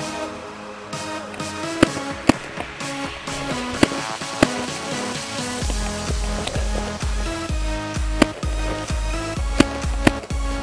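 Electronic dance music with sharp percussive hits; a heavy, regular bass beat comes in a little past halfway.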